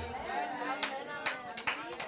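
Scattered hand claps, with faint voices underneath.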